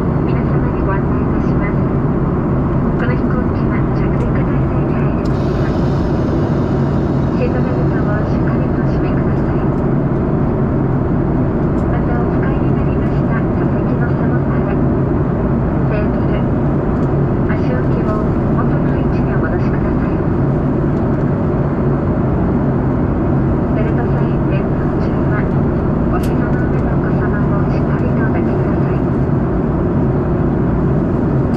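Steady, loud cabin noise of a Boeing 737-800 in flight, heard from a window seat beside the CFM56 engine: an even rush of airflow and engine noise with a constant low hum, and faint voices in the cabin.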